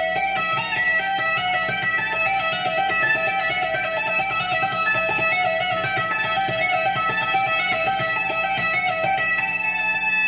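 Stratocaster-style electric guitar playing a continuous legato run on the high E string: rapid hammer-ons and pull-offs from the 12th fret (E) to the 14th, 15th and 17th frets (F#, G, A) of the E minor scale, the notes flowing into one another at an even pace.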